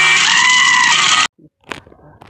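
Loud added audio: an animal-like bleat over dense music, cut off abruptly just over a second in, followed by a few faint clicks.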